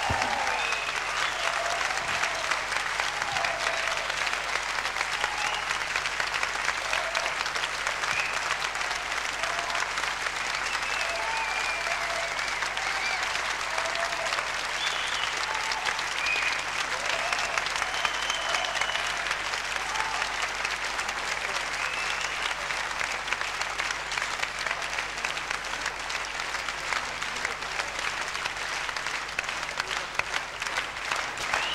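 Sustained encore applause from a concert hall audience, steady clapping with scattered shouts and cheers, calling the band back after the show's end.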